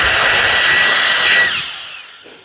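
DrillPro handheld turbo-fan dust blower running at full speed, a rush of air with a steady high whine, then spinning down about one and a half seconds in, the whine falling and fading.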